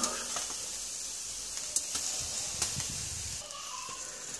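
Seafood and vegetables sizzling on a grill over glowing wood embers: a steady hiss with a few faint crackles.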